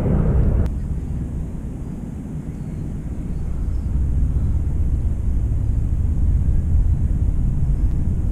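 A low, uneven rumble that dips a couple of seconds in and then slowly builds again.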